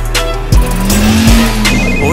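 A car engine revving up and back down with a hiss of tyres, starting about half a second in, over background music with a drum hit.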